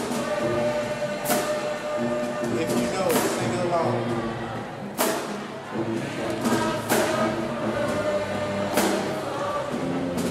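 Music with choir singing on long held notes, played over a sound system for a dance routine, punctuated by sharp percussive hits every second or two.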